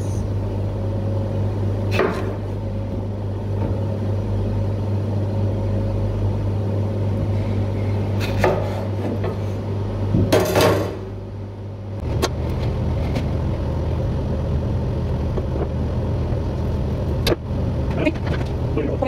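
A steady low machine hum fills the room, dipping briefly just before the twelve-second mark. A few sharp taps of a kitchen knife on a plastic cutting board sound as bananas are cut, about two seconds in, around eight and a half and ten and a half seconds, and once near the end.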